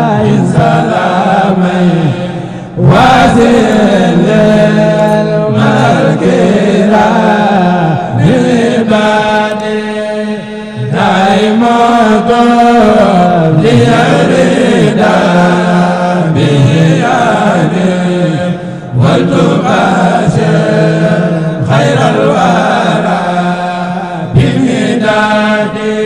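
A man chanting solo into a microphone in long, gliding, melismatic phrases over a steady low tone, pausing briefly for breath between phrases.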